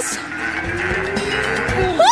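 Suspense sound effect: one long, low drone that rises slowly in pitch over a soft hiss.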